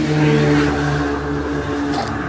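An engine idling steadily, with a rustle of handling noise and a sharp click near the end as the truck's cab door is opened.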